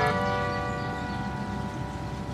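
Acoustic guitar's final notes ringing out and slowly fading at the end of the song, with no new notes struck.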